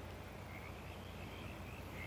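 Faint night-time ambience of frogs calling.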